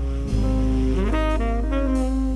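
Saxophone playing a slow jazz ballad melody, moving through a run of notes, over a sustained bass line.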